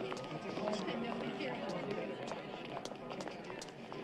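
Indistinct background voices over a steady ambient hum, with scattered short, sharp clicks.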